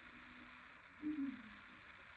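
Quiet room tone with a faint hiss; about a second in, a brief faint falling hum, like a person's voice.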